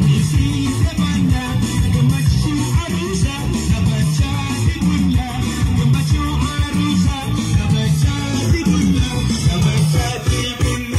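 Live dance music played on a Yamaha PSR-S975 arranger keyboard through a PA, with a heavy, busy bass line and a steady beat.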